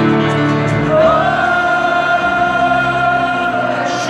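Live concert music heard from within a stadium crowd: a slow ballad with a sung note that slides up about a second in and is held, over the band, with many voices singing along.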